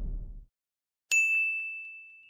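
The fading tail of a whoosh, then about a second in a single high, bright ding that rings on one steady pitch and slowly dies away: a logo chime sound effect.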